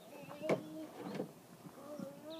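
A single sharp knock on the wooden playset steps about half a second in, as a toddler climbs, amid faint child and voice-like sounds.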